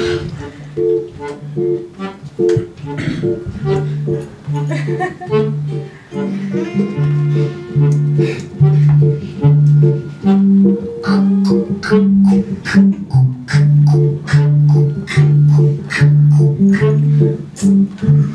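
Live accordion music: a bouncy oom-pah accompaniment of short bass notes alternating with chords, about two beats a second, with a held melody line joining about a third of the way in.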